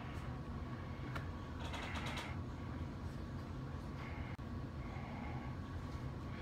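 Low steady room hum with a faint high tone, and a few light clicks and small handling noises, about a second and two seconds in.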